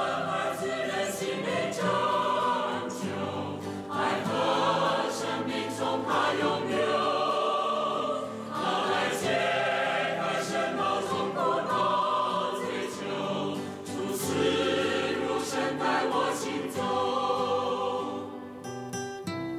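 A choir singing a Chinese hymn over instrumental accompaniment, the voices continuing without a break through the verse.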